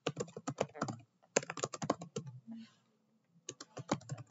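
Typing on a computer keyboard: quick runs of keystrokes in bursts, with a pause of about a second in the second half before the typing starts again.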